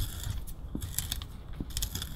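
Small screws being tightened into the Nebula 4000 Lite gimbal's plate, with a crunching metal sound made of scattered little clicks. The owner is unsure whether it comes from new, freshly tapped threads or from the screw hitting something inside, such as a circuit board, which he thinks it probably isn't.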